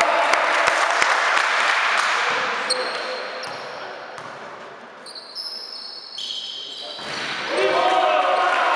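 A basketball bouncing on an indoor court, with voices, over a loud wash of noise that dies down after about two seconds. Short, high squeaks come in the quieter middle, and the noise and voices rise again near the end.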